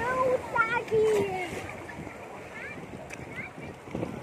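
A high voice making short wordless calls over the first second and a half, over the steady wash and splash of shallow sea water; after that only the water is heard.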